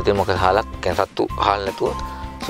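Speech over background music with steady held tones.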